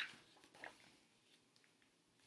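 Near silence, with a faint brief rustle of a picture book's page being turned early on.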